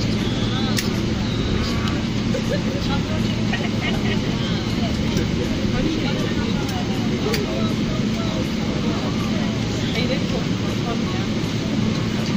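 Steady drone of an airliner cabin in flight, the engines and airflow making a constant low hum, with faint passenger voices under it.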